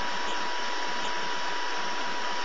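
Steady hiss with a thin, constant high whine running through it, unchanging throughout.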